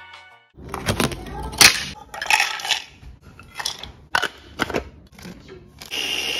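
Small food processor pulsed in short, irregular bursts, whole peanuts clattering and chopping against the plastic bowl as they are ground for peanut butter.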